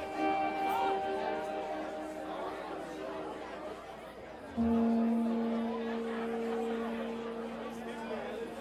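Electric guitar through an amp: a chord rings and fades over a few seconds, then a single low note is struck about four and a half seconds in and slowly dies away, over crowd chatter between songs.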